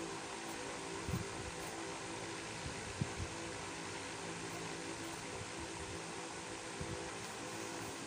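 Steady mechanical hum, like a room fan, with a few faint soft knocks about a second in and again around three seconds.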